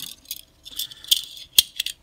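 Small magazine parts clicking and rattling in the hands as a locking plate is fitted onto a pistol magazine spring and the extension is handled, with one sharp click about one and a half seconds in.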